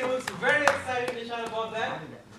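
People talking in a room, with one sharp click a little before the middle.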